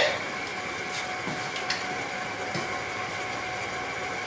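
Steady background hum of room machinery with a constant high whine, broken by a few faint light clicks and knocks.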